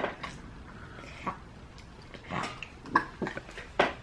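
Toddler coughing and gagging in a run of short, scattered bursts while choking on a piece of food.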